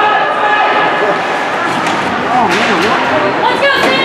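Voices of spectators and players calling out in an ice rink during a hockey game, with a couple of sharp knocks, one about two and a half seconds in and one near the end.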